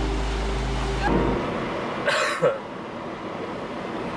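Background music ends about a second in. Then a man makes one short, gruff cough-like vocal noise inside a moving car, over a steady hum of road noise.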